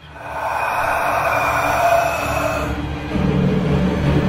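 A loud rush of noise swells up and cuts off sharply about two and a half seconds in, like a horror-film sound effect. A low droning scary-music score takes over near the end.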